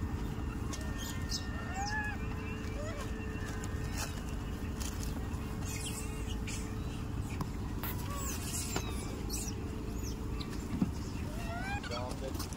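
Steady low outdoor rumble with a few short chirping animal calls, one about two seconds in and more near the end, and scattered light clicks and rustles.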